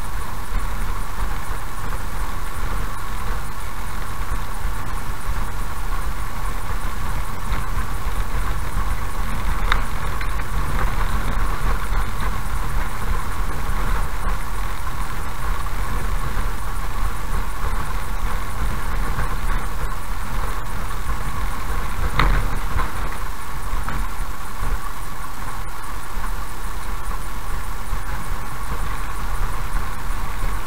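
Car driving slowly over a rough, patched asphalt road, heard from inside the cabin: a steady engine and road rumble with a few short knocks from bumps, the clearest about 22 seconds in.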